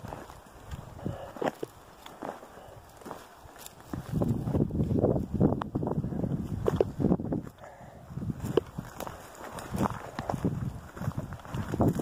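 Footsteps crunching through dry sagebrush and brush, with twigs snapping and branches scraping past. Sparse at first, then louder and busier from about four seconds in.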